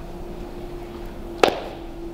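A single sharp knock about one and a half seconds in, over a steady low hum in the room.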